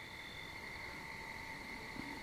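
Faint, steady high-pitched trilling of crickets at night, several constant tones overlapping.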